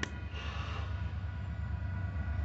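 Low, steady rumble of the Union Pacific local's EMD GP40-2 and GP40N diesel locomotives, still faint as they approach at speed.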